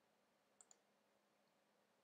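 Near silence broken by two faint, quick clicks a little over half a second in, about a tenth of a second apart: a computer mouse double-click.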